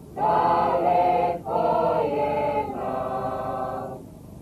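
Folk choir of men and women singing three long held chords in a row, each a little over a second.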